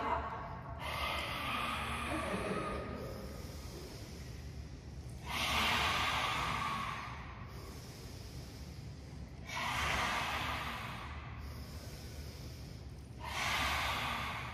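Lion's breath in yoga: forceful, breathy open-mouthed exhales with the tongue stuck out, four of them, about every four seconds, each lasting a couple of seconds, with quiet inhales through the nose between them.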